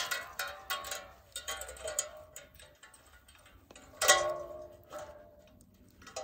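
Metal chain links clinking and a three-quart metal bush pot's wire bail clanking as the water-filled pot is hung from a tripod chain, with a louder ringing clang about four seconds in.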